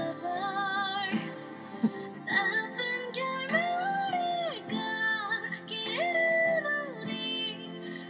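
A slow K-pop ballad, a woman singing solo in Korean over soft accompaniment. Two long held notes come near the middle and again about three quarters of the way through.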